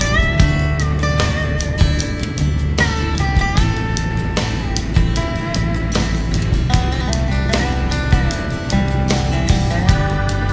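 Background guitar music: plucked and strummed notes, with pitches sliding from one note to the next.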